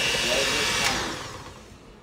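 Electric hand mixer running with its beaters in cake batter, then cutting off with a click just under a second in, its whir dying away over the next second.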